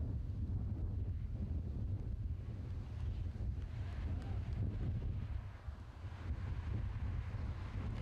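Wind buffeting an outdoor camcorder microphone: a steady low rumble that eases briefly about two-thirds of the way through.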